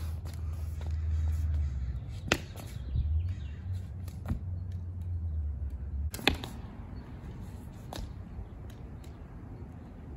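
Rattan eskrima sticks clacking sharply against each other in a few separate strikes a second or two apart, the loudest a quick double clack about six seconds in. A low rumble runs underneath for the first six seconds.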